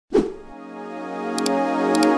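Logo-intro sound effects: a sudden pop at the very start, then a sustained synth chord that swells and holds, with quick mouse-click effects about one and a half seconds in.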